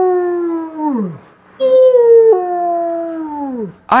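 Wolf howling: two long howls, each held steady and then falling in pitch as it dies away. The first trails off about a second in, and the second starts higher and ends near the end.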